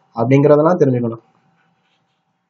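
A man's narrating voice speaks for about a second, then stops.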